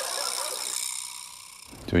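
An added high, steady shimmering tone, a comic sound effect laid over the edit, that stops abruptly about 1.7 seconds in. Faint background talk runs under its first part.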